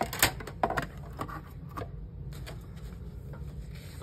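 Clear acrylic cutting plates of a die-cutting machine being handled and stacked, giving several light clicks and taps in the first two seconds, then little more than a faint low hum.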